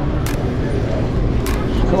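Steady low outdoor rumble with a faint sharp click a little more than once a second.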